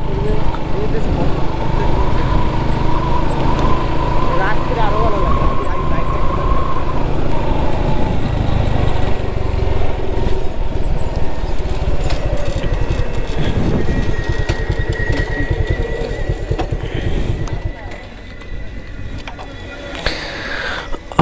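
Motorcycle engine running and wind rushing over the microphone while riding, the noise dropping as the bike slows and stops near the end.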